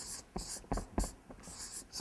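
Marker pen writing on a flip-chart pad: a string of short, scratchy strokes as letters are drawn.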